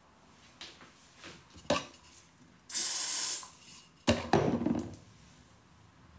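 Small objects being handled close to the microphone: several light clicks and a sharp knock, then a short steady hiss lasting under a second about three seconds in, and a loud knock followed by rustling about a second later.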